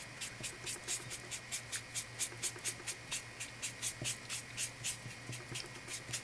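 A dry ink brush scrubbed rapidly back and forth over cream cardstock to ink and age it: a quick, even run of short, scratchy strokes, about five a second.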